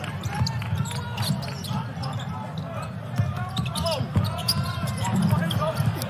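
Live basketball court sound: a ball bouncing on the hardwood floor and short squeaks of sneakers on the court, over steady arena crowd noise.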